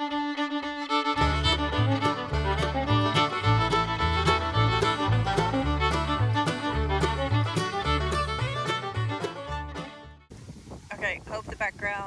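Upbeat fiddle music with a bouncing bass line that joins about a second in. It cuts off suddenly near the end, giving way to wind buffeting the microphone.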